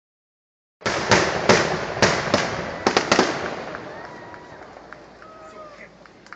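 Fireworks shells bursting overhead: about seven sharp bangs in quick succession, each trailing an echoing rumble, then dying away.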